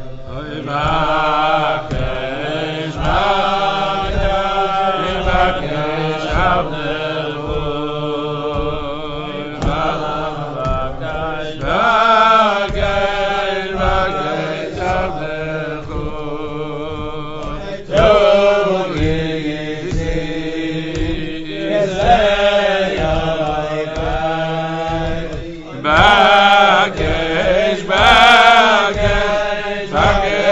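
Voices singing a slow, chant-like melody in phrases of long held, wavering notes.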